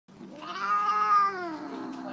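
Siamese tabby cat yowling in protest at having her nails clipped: one long call that rises, holds and falls, then settles into a low, steady moan near the end.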